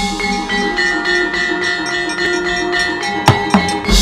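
Javanese gamelan playing a fast accompaniment for a shadow-puppet scene: a quick run of ringing metallophone notes over a steady pulse, with a couple of loud sharp drum strikes about three seconds in.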